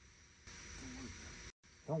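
Faint outdoor summer ambience: a steady high insect drone, joined about half a second in by a second-long burst of hiss.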